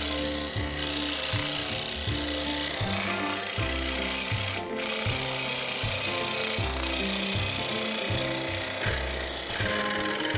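Scroll saw running and cutting through thin plywood: a steady rasping buzz of the reciprocating blade in the wood, with a short break just before halfway, stopping shortly before the end. Background music with a steady bass line plays underneath.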